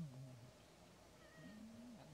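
Faint, meow-like calls from young macaques: a low call fading out early, then a short high squeak and a call that rises and holds near the end.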